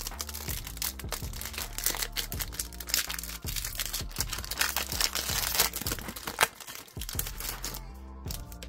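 A foil Pokémon TCG booster pack wrapper crinkling and tearing as it is opened by hand, a dense run of small crackles throughout. Quiet background music plays underneath.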